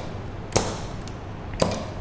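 Two sharp clicks about a second apart, the first followed by a short hiss of air: a 5/2 solenoid valve switching and a single-acting pneumatic cylinder stroking as the trainer's automatic cycle runs.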